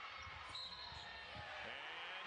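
College basketball game sound on a TV broadcast: steady arena crowd noise with drawn-out high squeaks from about half a second in, as a player drives and scores a contested layup.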